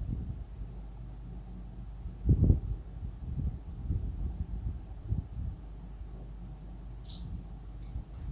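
Pencil drawing on paper on a tabletop: irregular soft knocks and rubs of the pencil and hand against the paper and table over a low steady rumble, with one louder thump about two and a half seconds in.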